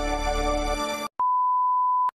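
Intro music with sustained electronic notes, which cuts off abruptly about a second in and is followed by a single steady high-pitched beep lasting about a second.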